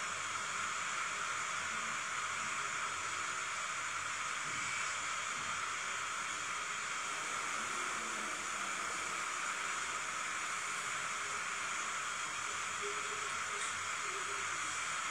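Steady, even hiss of a rolled ice cream machine's cold plate unit running.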